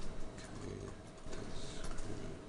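A few separate keystrokes on a laptop keyboard, typed as a line of code is entered, over a low room background.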